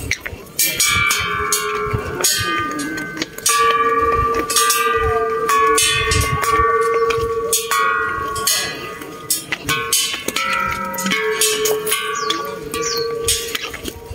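A row of hanging metal temple bells struck one after another by hand, many strikes roughly every half second to second, each leaving a sustained ringing tone that overlaps the next.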